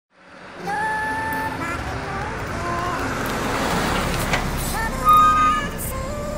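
Street traffic noise with a string of held tones stepping up and down in pitch over it, loudest for a moment about five seconds in.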